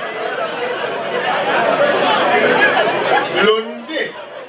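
Speech: a babble of many voices talking at once in a large hall, thinning to a single voice near the end.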